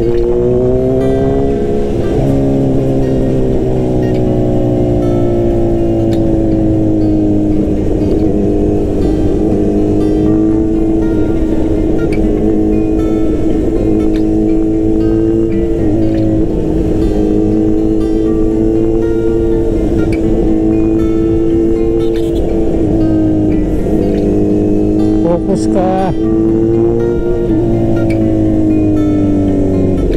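Motorcycle engine, a Bajaj Dominar 400's single-cylinder, running under way, its pitch rising and falling smoothly with the throttle and climbing sharply in the first couple of seconds, with background music underneath.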